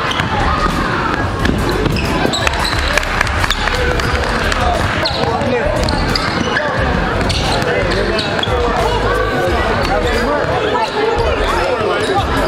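A basketball being dribbled on a hardwood gym floor, with many short sharp bounces, among the steady chatter and calls of players and spectators.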